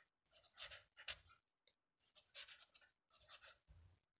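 Faint scratching of a felt-tip pen writing on paper, in short strokes grouped into a few bursts with brief pauses between them.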